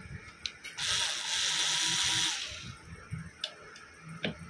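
Ceiling fan motor casing being handled on the workbench during reassembly: two light clicks, then a steady hissing rush about a second and a half long, then a few soft knocks.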